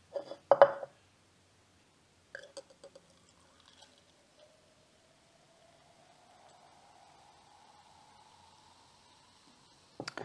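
Cola poured from a plastic bottle into a tall drinking glass: a brief bump of handling near the start, a few glugs as the pour begins, then a faint fizzing hiss with a thin tone that rises steadily in pitch as the glass fills.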